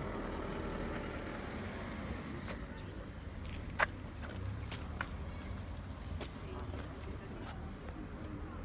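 Steady low outdoor background rumble with a few short sharp clicks spread through it, the loudest near the middle.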